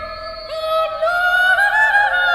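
Small mixed choir singing a single slow melodic line in long held notes, the pitch climbing in steps over the second half, in a large stone church.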